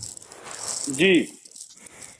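Noise on a participant's call microphone lasting about a second, with a brief pitched voice sound, rising then falling, about a second in.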